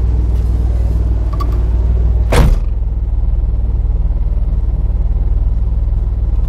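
DeLorean DMC-12's gull-wing door shut once about two seconds in, a single loud thud, after which everything sounds muffled from inside the closed cabin. Under it the car's PRV V6 engine idles steadily.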